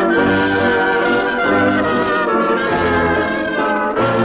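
A 1920s dance band playing a waltz at full strength, brass leading over held chords, with a low bass note about once a second, played back from a 1928 shellac 78 rpm record on a turntable.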